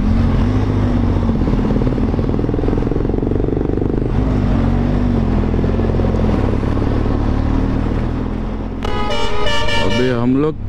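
A Benelli TRK 502X's parallel-twin engine runs on the move, with steady wind and road noise. Near the end a vehicle horn sounds for about a second.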